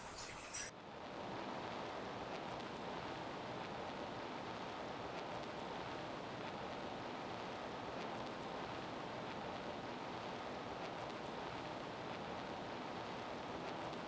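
Steady, even hiss-like noise with no tones or rhythm, starting just under a second in and stopping abruptly at the end.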